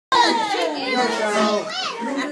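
A group of young children chattering and calling out over one another, with a high squeal near the end.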